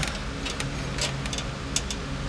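A few light, sharp clicks as a parking brake cable and its end fitting are handled at the bracket, over a steady low hum.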